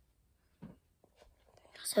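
Mostly quiet room tone with one short soft sound about half a second in, then a girl softly starting to speak near the end.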